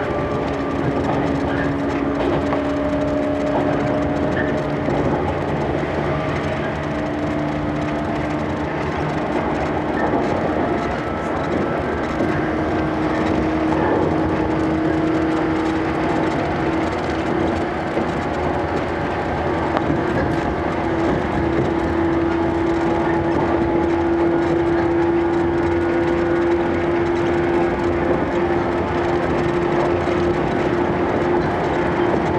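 115 series electric train running, heard from inside the car: a steady rumble of wheels on rail, with a humming tone that climbs slowly in pitch as the train picks up speed.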